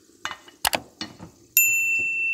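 Subscribe-button animation sound effect: a few crisp mouse clicks, then about one and a half seconds in a bright bell ding that keeps ringing.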